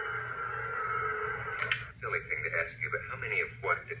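Film soundtrack played back with boxy, low-quality sound: a steady held tone for the first couple of seconds, ending in a click, then indistinct voices from a television talk show in the scene.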